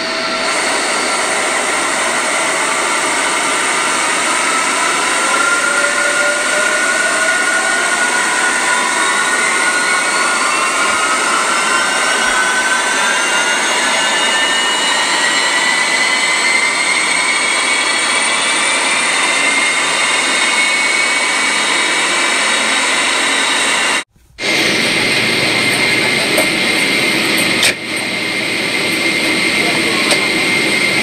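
Jet airliner engines spooling up, several whining tones climbing slowly in pitch over a steady rush of engine noise. About 24 seconds in, the sound cuts out for a moment and comes back as steady jet noise with a high, even whine.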